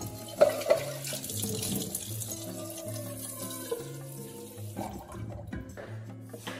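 Kitchen tap running into a stainless steel pot in the sink, with two sharp knocks near the start; the water stops about five seconds in. Background music plays under it.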